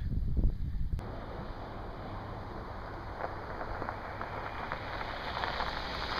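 Wind rumbling on the microphone for about a second. Then a steady hiss of a Kia Soul's tyres and engine on coarse asphalt as it approaches, growing a little louder near the end, with a few light ticks.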